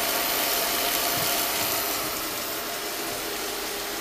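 Chopped vegetables (carrot, beet, onion, bell pepper) frying in a pan on an induction hob: a steady sizzling hiss with a faint even hum, easing slightly toward the end.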